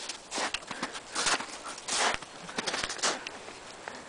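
Snow crunching in about five short, uneven bursts.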